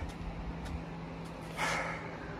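A man's breathy exhale, like a tired sigh, about a second and a half in, over a faint steady low hum.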